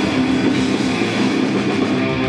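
Post-hardcore rock band playing live: distorted electric guitars through Marshall amplifiers, bass and drums, loud and continuous.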